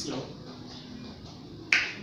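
A quiet pause, then a single short, sharp click near the end.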